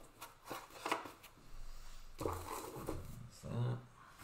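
Handling of a cardboard trading-card box and cards on a table: a series of sharp knocks and rustles as the box is moved. A short stretch of low voice comes in the second half.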